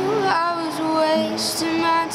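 A woman singing with an acoustic guitar, her voice gliding between held notes over the guitar, in a concrete parking garage.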